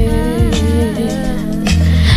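Slowed, reverb-heavy pop ballad: a woman's voice holds a wordless, gliding vocal line over sustained chords, with deep bass notes about once a second.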